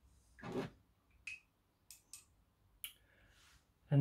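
Small objects being handled on a desk: a few faint, brief clicks and taps spread across a few seconds.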